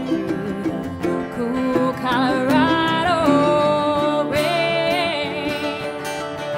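Live acoustic band music: a voice singing long, wavering notes over acoustic guitars and mandolin.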